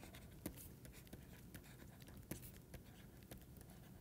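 Faint scratching and light taps of a pen stylus writing on a tablet, with small scattered ticks over near-silent room tone.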